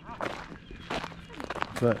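Footsteps crunching on a gravel path, several steps in a row at a walking pace, and a spoken word near the end.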